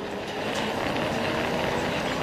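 Race car V8 engine noise at low speed under caution: a steady, many-toned engine drone over a rushing haze, growing slightly louder through the two seconds.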